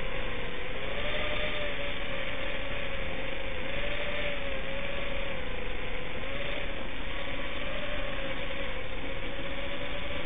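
FPV quadcopter's brushless motors and propellers whining, heard from the drone's onboard camera over a rushing noise. The pitch rises and falls every second or two as the throttle changes.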